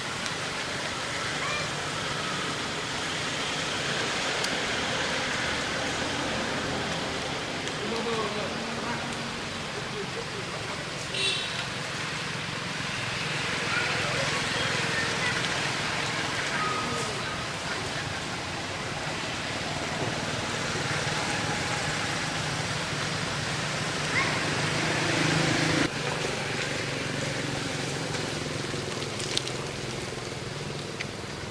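Steady outdoor background noise with faint, indistinct voices of people talking, and a brief run of clicks about eleven seconds in.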